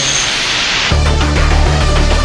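A noisy rush like hiss, then tense soundtrack music with a heavy, repeating bass line that comes in about a second in.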